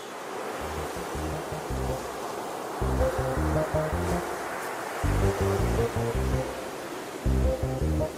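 Background music with a stepping bass line under a steady, even hiss-like wash.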